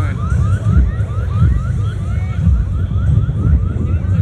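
A rapid, repeating rising electronic chirp, about four a second, like a siren's yelp, over a heavy low rumble.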